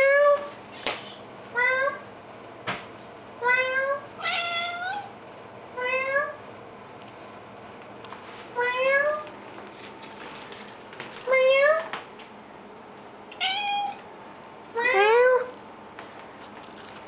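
Domestic cat meowing over and over, about nine short meows, each rising in pitch, one every second or two, with a couple of light knocks early on.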